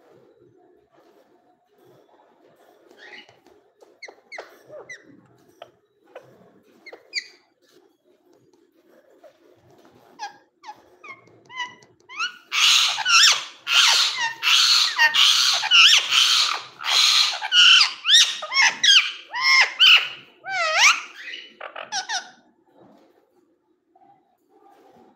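Indian ringneck parakeet giving scattered soft chirps and clicks, then, about halfway through, a loud run of screeching chatter with rising and falling notes that lasts about ten seconds before stopping.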